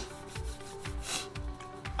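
Hands rubbing together in a few strokes, over faint background music.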